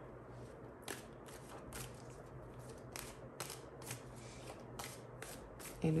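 A deck of tarot cards being shuffled by hand: short, soft card clicks coming irregularly, about two a second, over a faint low hum.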